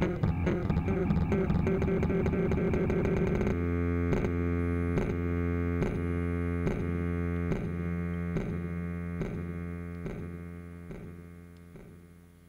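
Electric bass played through a delay effect: busy plucked notes for the first few seconds. Then the playing stops and the delay keeps repeating, about twice a second, with the echoes fading out over the last few seconds.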